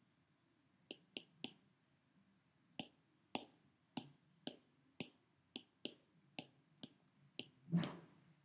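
Key clicks from an iPad's on-screen keyboard as an email address is typed, about fourteen short clicks at an uneven typing pace. One louder, fuller click comes near the end.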